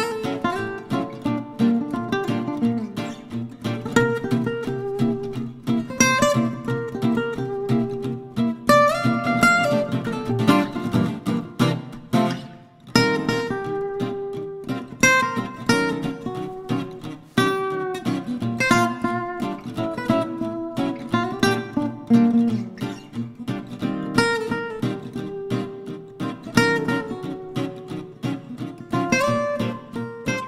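Background music played on acoustic guitar: plucked notes in a steady, continuous melody.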